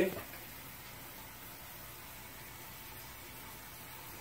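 Faint, steady hiss of tap water running into a small tank.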